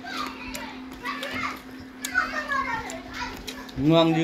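Children's voices talking, with a man's voice starting loudly just before the end, over a steady low hum.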